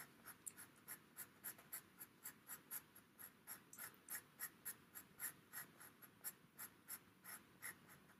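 Faint, rapid scratching of a pastel pencil on PastelMat paper: short back-and-forth strokes at about three a second, laying in and finishing off a small area of colour.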